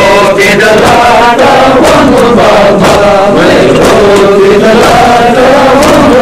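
Group of men chanting a Muharram lament (noha) together, loud throughout, with irregular sharp strikes sounding through the chant.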